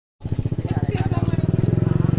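A motorcycle engine idling close by, a rapid, even low throb that starts just after the opening instant, with faint voices over it.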